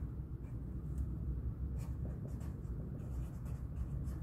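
Black Sharpie marker writing on a paper index card: a run of short, separate pen strokes as the felt tip moves across the card.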